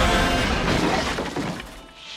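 A crash with shattering, breaking debris as the song's final chord cuts off. The crackle fades away over about two seconds.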